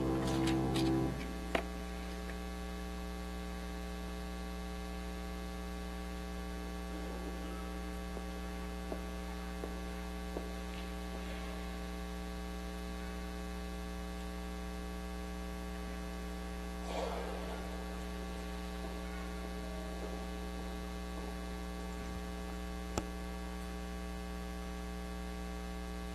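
Steady electrical mains hum with a few faint clicks and a soft, brief rustle about two-thirds of the way through. In the first second, the last notes of music die away.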